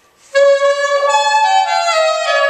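Soprano saxophone played solo: after a brief pause, a phrase begins about a third of a second in with a held note, rises to a higher note and steps back down near the end.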